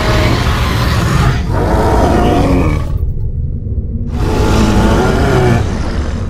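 Kaiju roar sound effects used as subtitled monster dialogue. One roar, already under way, ends about a second and a half in and a second follows straight on until about three seconds. A third starts about four seconds in and runs past the end. A steady low rumble lies underneath.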